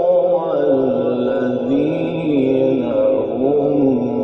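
A man's voice reciting the Quran in the melodic Egyptian mujawwad style, drawing out long ornamented notes that rise and fall.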